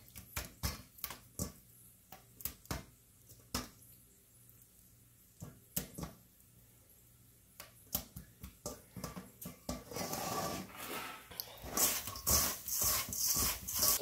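Soft wet clicks and squelches as calamari pieces are dropped into egg wash and worked by hand in a stainless steel bowl, with a pause in the middle. From about ten seconds in, a steady rustling as the coated pieces are tossed in dry panko breading.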